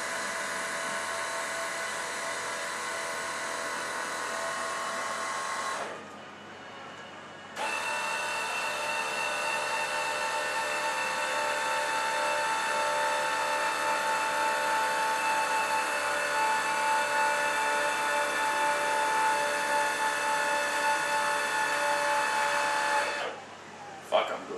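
Small electric motor whining steadily as it powers a panel van's rear door upward. It runs for about six seconds, stops for a second and a half, then runs again for about fifteen seconds before cutting off near the end.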